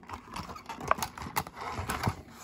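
Light handling knocks: hard objects clicking and tapping on a wooden tabletop, three sharp clicks about half a second apart in the second half.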